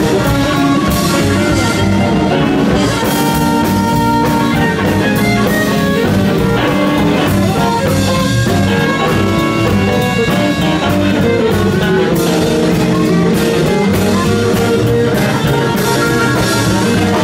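Live blues band playing: a harmonica played cupped against a microphone, over a gold-top electric guitar, an upright double bass and a Gretsch drum kit keeping a steady beat.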